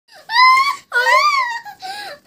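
A young girl laughing in long, very high-pitched squeals, three drawn-out cries that rise and fall in pitch.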